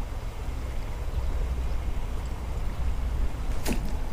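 Steady outdoor noise of a flowing creek with a continuous low rumble, and a brief click near the end.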